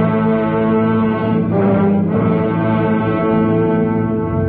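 Brass section of a radio drama's orchestral score holding a loud, sustained chord. The upper notes shift slightly about halfway through. The recording is a band-limited 1942 broadcast, with nothing in the high treble.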